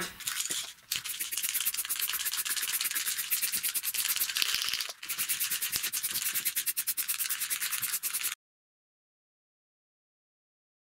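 Aerosol spray can of lacquer hissing as a wooden piece is sprayed, in long spells with brief breaks about a second in and halfway through. It cuts off suddenly near the end.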